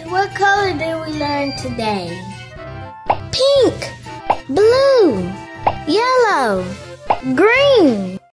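A child's voice over cheerful children's background music, then four cartoon pop sound effects about a second and a half apart, each sweeping up and back down in pitch.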